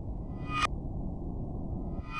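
Horror-film score: a low, dark drone with two short rising swells that cut off sharply, about a second and a half apart.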